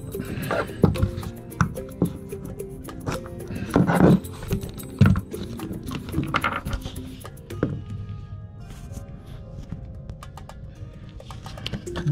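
Background music playing, with several sharp clicks and knocks over it, the loudest about four and five seconds in.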